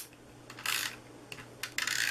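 Tape-runner adhesive (Stampin' Up Snail) being run across cardstock: a small click, then two short scratchy rasps of the tape laying down, about a second apart.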